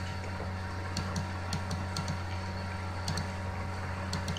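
Room background noise: a steady low hum with a scattered run of faint, irregular ticks.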